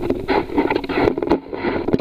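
Crunching and rustling as someone walks over snow with the camera jostling against clothing and gear, an uneven run of scrapes and knocks.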